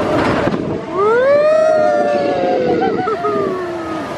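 A roller-coaster rider's long scream on Expedition Everest: it rises in pitch about a second in, then slowly falls away, over a steady rushing noise from the moving ride.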